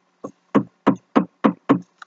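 Six short, sharp taps in a steady rhythm, about three a second; the first is fainter than the rest.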